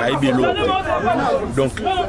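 Speech only: men talking in French.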